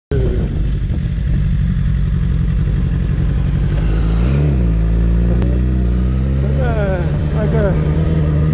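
Sport motorcycle engine running under way, with heavy wind rumble on the rider-mounted microphone; the engine note rises and falls about halfway through.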